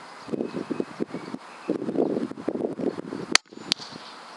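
Gusty wind buffeting the microphone, then a single sharp crack from a Weihrauch HW100 PCP air rifle firing near the end. A second, fainter smack follows about a third of a second later: the pellet striking the rabbit at 50 yards.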